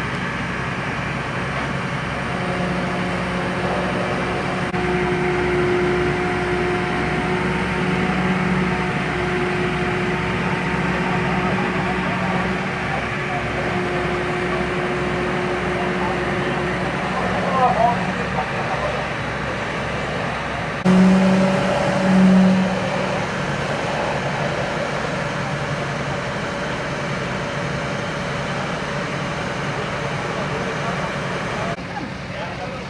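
Fire engine's diesel engine running steadily, with a low pulsing throb and a steady hum. Brief voices come through near the middle, and two short louder sounds follow an edit about two-thirds of the way in.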